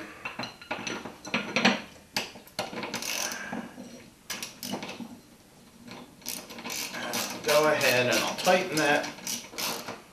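Hand socket ratchet clicking in runs of quick strokes as a lag screw is driven through a bracket plate into a wooden wall block, with a quieter pause about halfway through.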